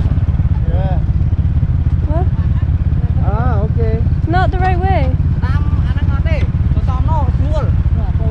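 Small motorbike engines running with a steady low rumble, as a second motorbike rides up and stops alongside.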